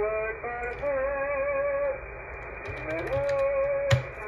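Radio audio from an 11-metre-band AM station heard through a web SDR receiver, narrow and muffled: a voice holding long, slightly wavering notes, like singing, with one rising glide near the middle. A sharp click sounds just before the end.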